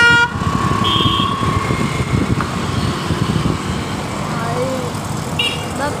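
Busy street traffic, a steady low rumble of engines and tyres, with a short vehicle horn toot right at the start. A fainter steady tone follows for about a second and a half.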